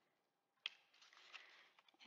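Near silence, with two faint clicks from cardstock paper being handled: one just over half a second in, a smaller one about a second later.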